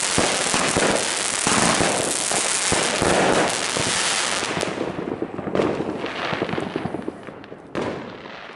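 Funke Snowblind 25-shot 20 mm firework cake firing its final shots: dense, rapid bangs and crackle for the first half, then thinning out into scattered, fading cracks, with one last sharp pop near the end.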